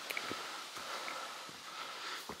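Faint sounds of a hiker on the move: quiet breathing and a few soft knocks from footsteps.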